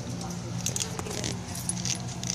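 Small caged birds chirping in quick, high, scattered bursts over a steady low hum.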